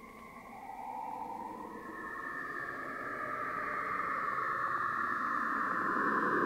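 Electronic synthesizer drone of hissy, filtered noise bands whose pitch slowly drifts, swelling steadily louder.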